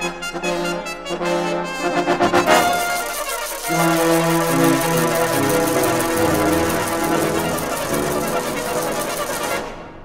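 Full brass band playing: quick repeated stabbing notes build to a loud peak about two and a half seconds in. From about four seconds in, the whole band, basses included, holds a loud sustained chord that cuts off sharply just before the end.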